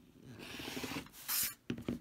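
Rotary cutter blade rolling through cotton quilt batting along the edge of an acrylic ruler on a cutting mat: a gritty rasping cut about a second long, trimming the excess batting off the block. A shorter, sharper scrape follows, then a few light clicks near the end.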